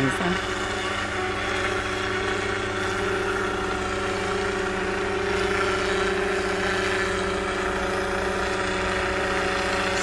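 Agricultural spraying drone coming down low on a spraying pass, giving a steady hum of several even tones.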